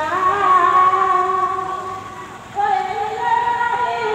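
A woman singing a melody in long held notes that slide between pitches, with a short break about two and a half seconds in.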